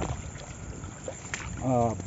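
A shoe stepping into shallow stream water with a light splash and scuffle. A man's voice cries out near the end as the water gets into his shoe.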